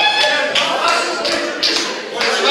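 Rhythmic tapping, about two or three sharp strokes a second, over music and voices.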